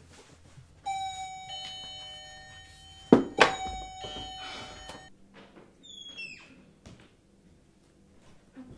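Doorbell chime ringing: a ringing tone starts about a second in, then two sharp strikes just after three seconds ring out together until about five seconds. A few short high falling squeaks follow around six seconds, and a single knock near seven.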